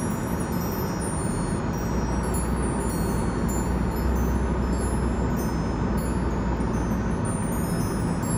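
Steady road and engine noise heard inside a moving car's cabin, with a low rumble that swells in the middle.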